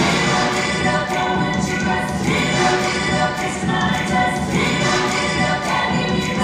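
Music sung by a group of voices in a choir-like blend, continuous and steady in loudness.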